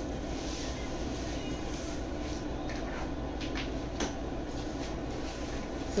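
Steady low room hum with a few faint knocks and handling sounds, about two, three and a half, and four seconds in.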